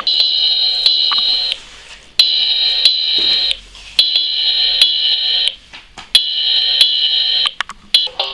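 Electronic drum sound book's built-in speaker sounding four long, shrill electronic tones, about two seconds apart, with short sharp clicks in the gaps between them.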